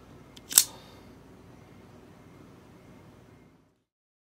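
A single sharp click from a hand at the camera about half a second in, then faint room tone that fades out to silence.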